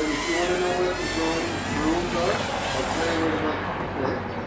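People talking indistinctly over a steady hiss, which cuts off about three seconds in.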